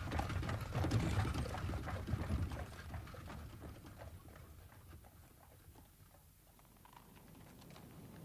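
A woman weeping, her sobs softening and dying away over the first few seconds above a low rumble, which also fades to near silence before a faint return near the end.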